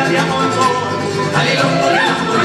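Live mariachi ensemble playing: a section of violins over strummed guitars.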